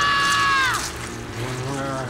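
A cartoon character's high-pitched, held scream that falls away and stops a little under a second in, followed by softer wavering tones.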